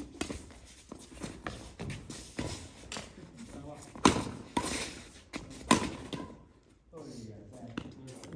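Badminton rally: rackets striking a shuttlecock in a quick exchange, sharp cracks every half second to a second, the loudest about four seconds in. The hits stop about six seconds in, leaving footsteps on the court and faint voices.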